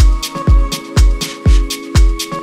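Electronic dance music: a deep kick drum about twice a second with crisp hi-hat hits between the kicks, over held synth chords.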